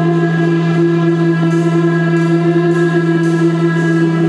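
Live band music opening on an electric guitar holding a steady, sustained drone of two low tones through the amplifier, with faint cymbal ticks above.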